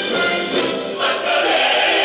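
Large stage-musical chorus singing together over an orchestra, with a new phrase entering about a second in.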